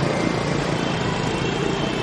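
Steady city street traffic: cars and motor scooters passing close by, a continuous mix of engine and tyre noise.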